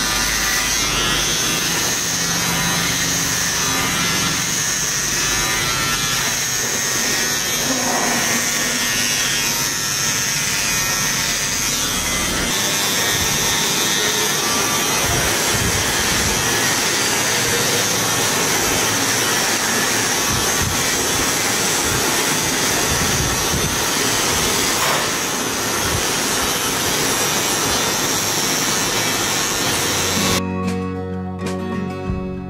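Cordless electric hair clipper buzzing steadily as it is run over a man's scalp, cutting the hair down close to the skin.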